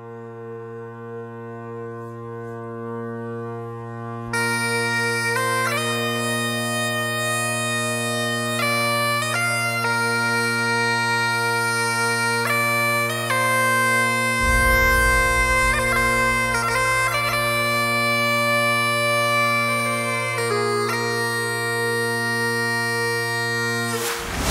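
Great Highland bagpipes: the drones swell in on one steady chord, then the chanter melody starts about four seconds in. A deep low rumble joins underneath about halfway through.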